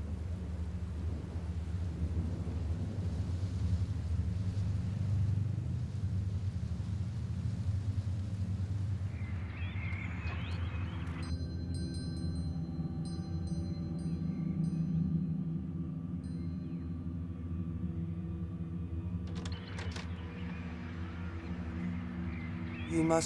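Horror-film score of a low rumbling drone; from about halfway in, a cluster of sustained higher tones is held over it for several seconds, then fades.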